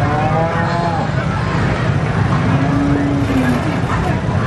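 Cattle lowing: two long calls, each about a second, one at the start and one near the end, over a steady low rumble and crowd noise.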